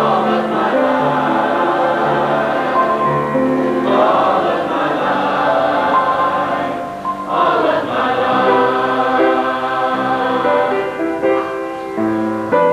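Mixed youth choir singing a sustained anthem in parts, with a brief break between phrases about seven seconds in.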